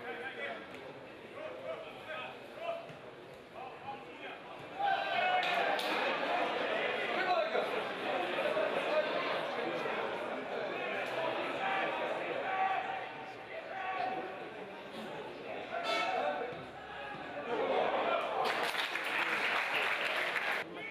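Voices of a small football crowd shouting and calling, with a few sharp knocks. The noise jumps up about five seconds in and swells again near the end as an attack builds near goal.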